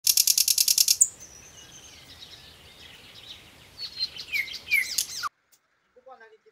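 A loud, fast rattle of about ten pulses in the first second, then birds chirping with short falling whistled notes. The sound cuts off abruptly near the end.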